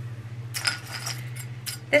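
Small jewelry pieces clinking against a ceramic bowl as they are picked through by hand: a few light, separate clinks over a steady low hum.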